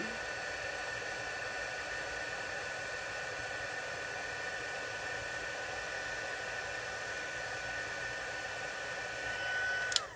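Embossing heat gun running steadily: a fan hiss with a constant high whine, heating embossing powder until it melts. It cuts off right at the end.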